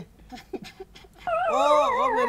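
A short hush, then, a little past halfway, a loud drawn-out whining voice whose pitch wavers and bends up and down.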